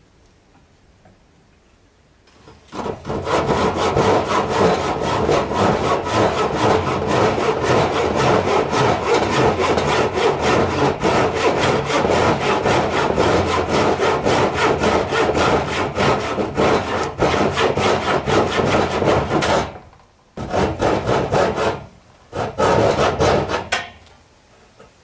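A hand saw cutting a piece of weathered wood with quick, steady back-and-forth strokes. It starts about three seconds in and runs for about seventeen seconds, then stops and resumes in two short spells near the end.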